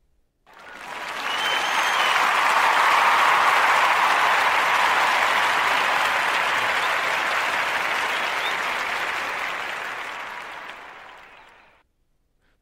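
Crowd applause that swells in about half a second in, peaks a few seconds later and fades away gradually towards the end.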